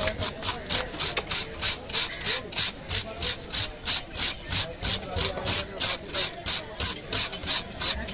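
Knife blade scraping scales off a large fish's skin on a wooden cutting block, in fast, even back-and-forth strokes, about four or five a second.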